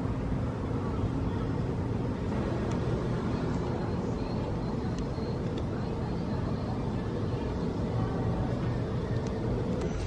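Steady low hum of distant city traffic, an even rumble with no distinct events.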